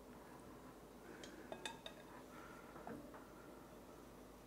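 Mostly near silence, with a few faint clinks and taps of a metal ladle against a saucepan and a glass bowl as a ladle of broth is poured into a thickening roux sauce and stirred in.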